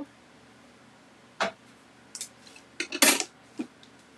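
A few sharp clicks and clatters of hard plastic and metal die-cutting plates knocking together as they are handled around a manual die-cutting machine. There is a single click about a second and a half in, and the loudest burst of clatter comes about three seconds in.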